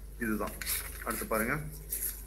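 A few light clinks, with two short vocal sounds that slide in pitch.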